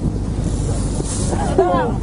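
Steady low rumble of a fishing boat's engine running, with a man's voice calling out briefly near the end.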